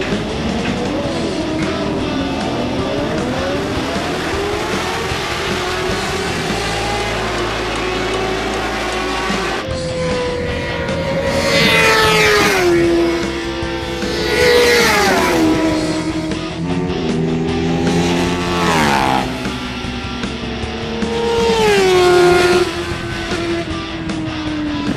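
Racing motorcycles on a circuit: first a group of engines pulling away together in the distance, their pitch climbing steadily. Then, about ten seconds in, single bikes pass at speed four times, a few seconds apart, each engine screaming close by and then falling in pitch in steps as it goes away.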